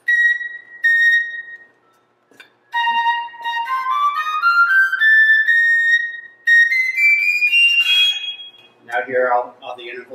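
Modern fife sounding two short high notes, then playing a rising scale note by note over about five seconds, climbing into its high register, played to show how evenly the instrument is in tune. A man starts speaking near the end.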